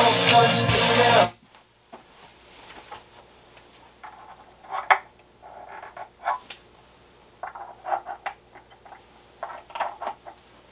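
A hip-hop track playing over hi-fi bookshelf speakers cuts off suddenly about a second in. Then comes a series of soft clicks, knocks and rustles as the speakers are handled and switched over by hand, grouped in short clusters through the rest.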